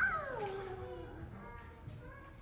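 A young child's single whining cry, starting high and falling steadily in pitch over about a second.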